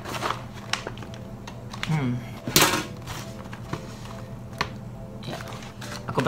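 Crinkle and rustle of a paper-and-cardboard snack packet being handled and reached into, with scattered small clicks and one louder crackle about two and a half seconds in. A man gives a short "hmm" just before the loud crackle.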